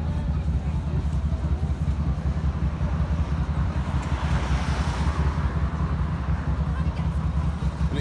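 City street traffic: a car passes, swelling and fading about halfway through, over a steady low rumble of wind on the phone's microphone.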